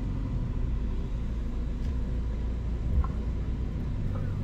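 A car's running engine heard from inside the cabin: a steady low rumble.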